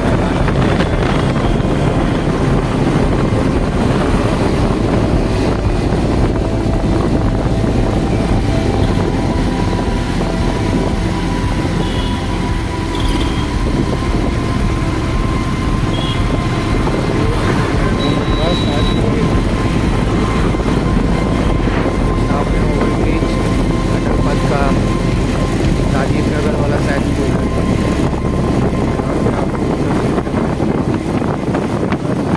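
Bajaj Pulsar 220's single-cylinder engine running at road speed under steady wind rush on the microphone.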